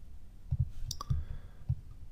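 Computer mouse clicking: two sharp clicks in quick succession about a second in, among a few soft low thumps of the mouse and desk being handled.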